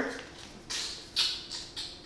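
A few short scrapes and rustles from a cardboard eyeshadow palette box being handled and lifted up.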